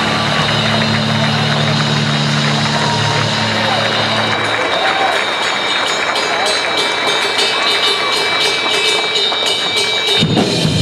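Audience cheering and clapping at a live rock drum-battle performance over a backing track. A held low chord rings for the first four seconds or so, then sharp hits come in more and more often toward the end as the drums start up again.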